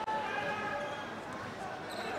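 A volleyball struck once by a jump server's hand just after the start, over a steady murmur of spectator voices in a large hall.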